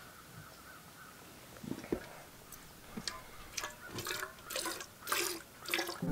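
Streams of milk squirting into a stainless steel pail as a cow is milked by hand. The squirts start about two seconds in and come at roughly two a second.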